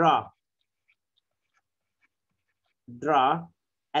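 A man's voice saying "draw" twice, with near silence for about two and a half seconds between the words.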